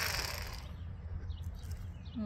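Electric fillet knife whirring as it cuts through a white bass, then cutting off about half a second in. After that there is a low steady rumble and a few faint bird chirps.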